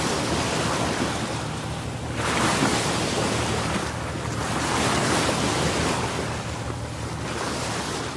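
A rushing-water sound effect, like surf, swelling and easing every two to three seconds.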